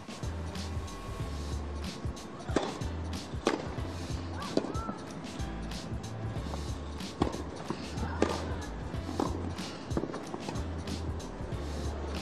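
Tennis rally on a grass court: a series of sharp racket strikes on the ball, some about a second apart, with low background music underneath.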